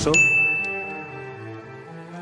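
A single bright ding, a transition chime sound effect, struck just after the start and ringing for about a second over soft background music.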